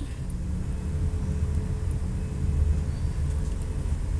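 A steady low rumble of background noise with a faint steady hum above it.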